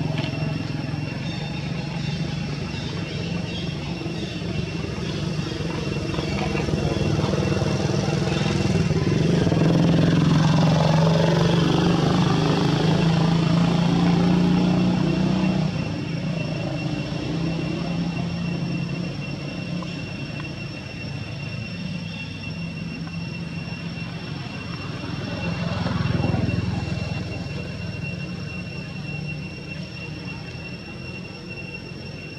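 A motor vehicle engine runs, growing louder about eight seconds in and falling away around sixteen seconds, with another brief swell near twenty-six seconds. A steady high thin tone runs underneath.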